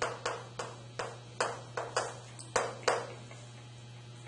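Chalk tapping and scratching on a chalkboard as numbers and an equals sign are written: about nine sharp taps a third of a second apart, stopping about three seconds in.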